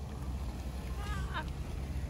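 Ford shuttle bus engine running close by: a steady low rumble. A faint voice is heard briefly about a second in.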